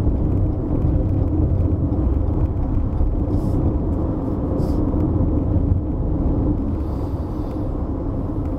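Cabin noise of a 2020 Toyota RAV4 cruising at highway speed: steady low road and tyre rumble with a steady hum, the 2.5-litre four-cylinder ticking over at low revs in a high gear of the eight-speed automatic.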